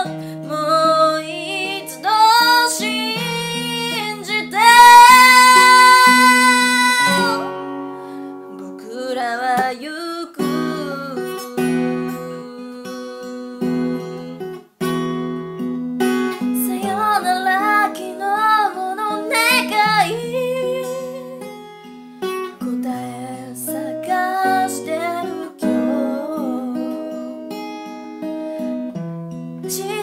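A woman singing a Japanese ballad while accompanying herself on acoustic guitar, the guitar picked and strummed throughout. She holds one long, loud high note about five seconds in.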